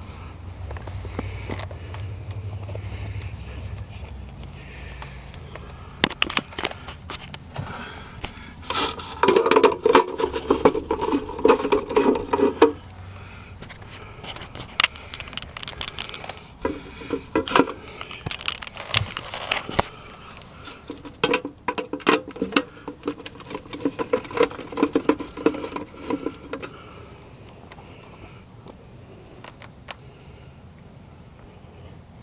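Hands taking apart an outdoor security light fixture: scattered clicks, scrapes and rattles of its plastic and metal parts, with three spells of a few seconds each of rapid grinding clicks, near the middle and later on.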